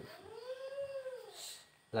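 A cat meowing once: a single drawn-out meow that rises and then falls in pitch, lasting just over a second.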